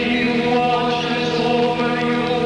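A group of voices singing a slow, chant-like hymn in long held notes.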